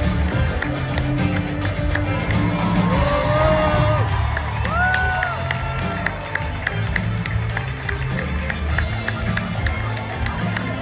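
The show's live band plays the curtain-call music with a steady bass line while the audience claps and cheers, with a couple of short whoops near the middle.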